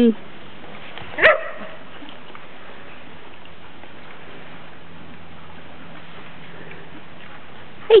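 A poodle gives a single short bark about a second in, over a steady low background hiss.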